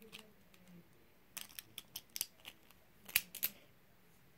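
Light clicks and taps from small plastic Beyblade tops being handled, scattered through the middle with a louder cluster of clicks near the end.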